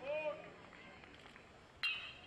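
Aluminum college baseball bat hitting a pitched ball near the end: one sharp ping with a short metallic ring.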